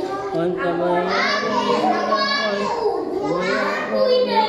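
A man reciting the Quran aloud in Arabic, chanting in long held notes that bend and glide in pitch.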